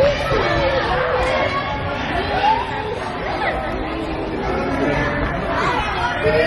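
Several high children's voices calling out and chattering over one another in a sports hall during a youth futsal match.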